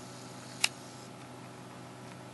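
A single sharp click about two-thirds of a second in, over a steady low hum and hiss.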